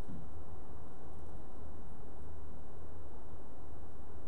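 Quiet room tone: a steady low hum with faint hiss and no speech.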